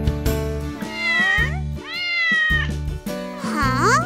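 A cartoon cat meows twice over bouncy children's music with a steady bass beat. Near the end comes a rising slide in pitch.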